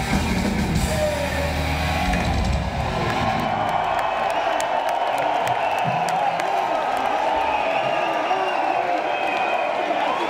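A thrash metal band playing live with electric guitars, bass and drums ends a song about three seconds in, and a concert crowd cheering and whooping follows.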